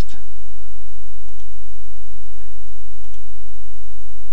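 A few faint, widely spaced computer mouse clicks over a steady low hum.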